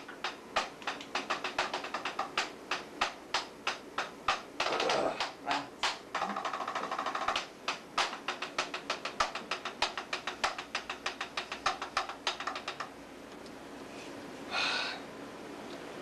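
A rapid, fairly even series of sharp clicks, about three a second, which stops about 13 seconds in. A short hiss-like burst follows near the end.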